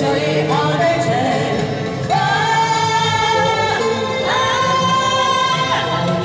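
Two female voices singing a pop duet into handheld microphones over a recorded backing track. They hold two long notes, the first starting about two seconds in and the second about four seconds in.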